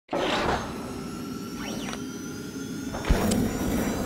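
Sound effects for an animated channel logo: swishing noise with faint steady tones and gliding sweeps, and a sharp low thump about three seconds in.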